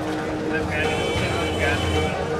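Busy market street: men's voices calling out over a steady low engine hum.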